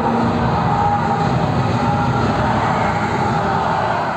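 Soundtrack of an immersive projection show, played over the hall's loudspeakers: a loud, steady, noisy sound effect under faint held music tones, with no narration.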